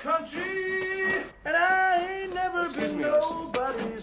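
A person singing in long held notes, in short phrases with brief breaks between them.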